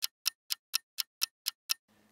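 An added ticking sound effect: sharp, evenly spaced clock-like ticks, about four a second, with no background sound. The ticking stops near the end.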